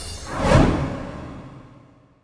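The tail of a TV programme's closing theme music, ending in a whoosh effect that swells about half a second in and then fades out.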